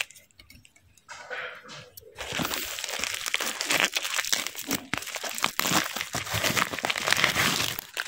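Plastic bubble mailer being torn open by hand and its bubble-wrap lining crinkled as foil card packs are pulled out: a dense, crackly rustle that starts about two seconds in after a quiet start.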